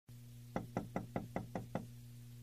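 Knocking on a door: seven quick, even knocks, about five a second, starting about half a second in, over a faint steady low hum.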